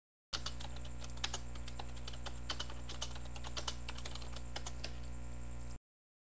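Typing on a computer keyboard: irregular key clicks over a steady electrical hum. The sound starts just after the beginning and cuts off suddenly near the end.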